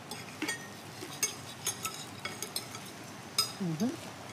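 Steel knife and fork clinking and scraping against a ceramic plate while grilled halloumi is cut: a scattered series of light clicks, some with a short high ring. A brief murmur from a voice near the end.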